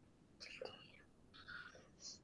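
Near silence, broken twice by brief, faint whispering: about half a second in and again about a second and a half in.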